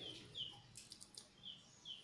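A small bird chirping faintly in the background, four short high chirps that each dip slightly in pitch, with a couple of faint clicks about a second in; otherwise near silence.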